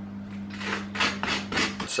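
A quick run of short rasping scrapes, about four a second, as a kitchen utensil scrapes chopped food onto a plate of toast, over a steady low hum.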